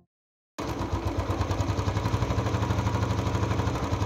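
Motorbike engine running with a steady, fast throb. It cuts in abruptly about half a second in.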